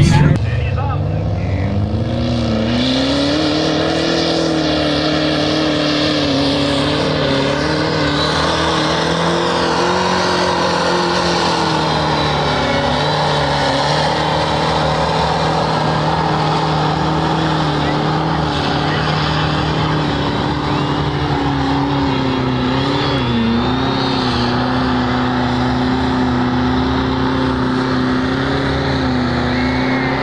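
A lifted mud truck's diesel engine revving up over the first couple of seconds, then held at high revs for the run, its pitch wavering as it loads and unloads, with the tyres churning through the mud pit.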